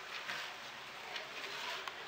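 Hands rubbing and tossing damp couscous grains in a glazed earthenware dish, a soft, faint gritty rustle with a few light ticks, working in the water before the first steaming.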